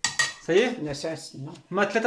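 Two metal spoons clinking together, with a voice over them.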